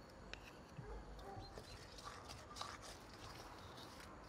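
Very quiet, with a few faint soft clicks and taps of a wooden utensil against a brass bowl as a thick sauce is spooned in and stirred.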